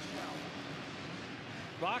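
Supercross dirt bike engines revving amid a steady wash of arena noise, with a commentator's voice coming in near the end.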